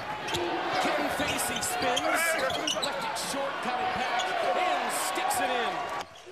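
Live basketball game sound in an arena: a ball bouncing on the hardwood court amid crowd noise and voices.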